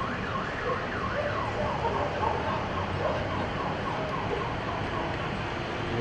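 Emergency siren sounding in a fast up-and-down yelp, several sweeps a second, fading out over the first couple of seconds and leaving a steady background hiss.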